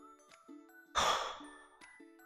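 A short breathy sigh about a second in, over faint background music of soft held notes.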